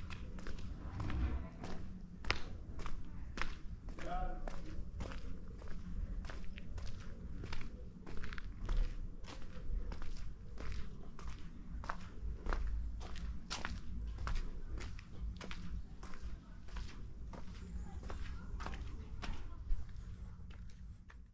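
Footsteps of a person walking at a steady pace over cobblestones, about two steps a second.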